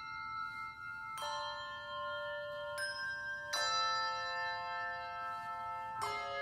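Handbells ringing soft, slow chords. A new chord is struck about a second in, a lighter one near three seconds, and another about half a second later, each left to ring on.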